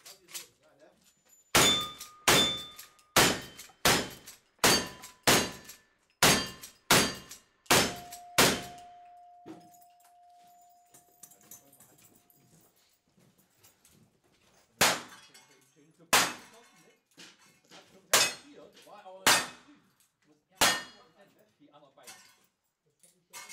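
Gunshots, each answered by the clang of a struck steel target. A quick string of about ten shots comes roughly 0.7 s apart, and one plate rings on for several seconds after the last. After a pause, five more shots follow, spaced further apart.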